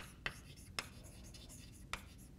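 Chalk writing on a blackboard: four sharp taps as the chalk strikes the board while forming letters.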